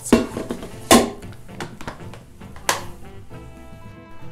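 Knocks of the metal inner bowl of a Redmond multicooker being set back into the cooker, then its lid shutting, with background music throughout.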